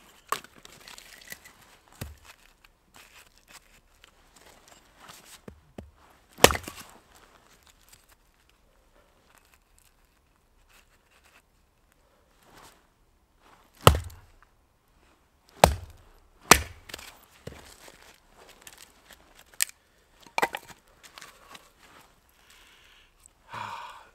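Hultafors medium-size splitting axe striking and splitting small pieces of pine. A few sharp chopping strikes with long pauses between them: one about six seconds in and a quick run of three loud ones in the middle, then softer knocks later.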